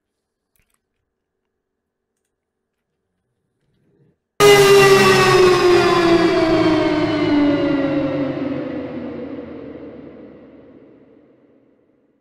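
A tonal trailer downer sound effect plays back about four seconds in. It starts suddenly as a bright pitched hit with many overtones, then glides steadily down in pitch while fading out over about seven seconds. It is a time-stretched tonal reverse effect turned to play forwards.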